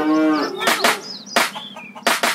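A cow's moo, a single pitched call that ends about half a second in, followed by a few sharp claps or knocks and short high chirps.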